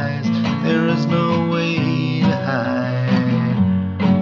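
Acoustic guitar strummed in a steady rhythm, with a man singing over the chords.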